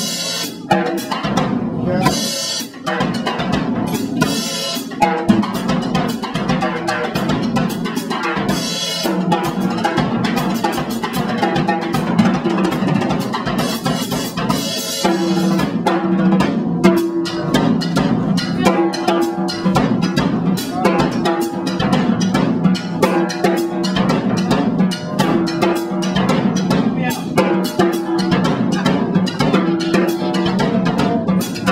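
A drum kit played in a fast, dense live solo: snare, bass drum and tom strokes with cymbal crashes about half a second in, near 2 s, near 9 s and around 14 to 15 s. A repeating low pitched figure runs through the second half.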